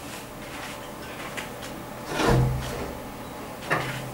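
A window being pulled shut: a low rumbling slide and knock a little after two seconds in, with a few faint clicks before it.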